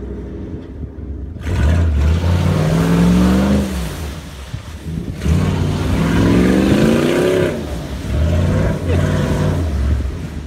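SUV engine revved hard in repeated bursts while the vehicle is stuck in mud, its pitch climbing in two long surges and a shorter third burst near the end.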